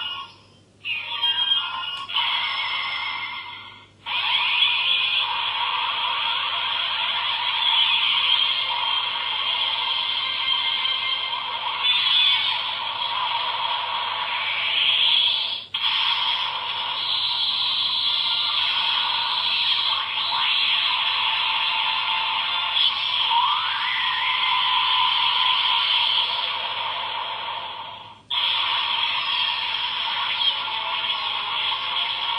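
DX Ultra Z Riser toy playing music and sound effects through its small built-in speaker, thin and tinny with no bass, with rising sweeps, breaking off briefly about 4, 16 and 28 seconds in.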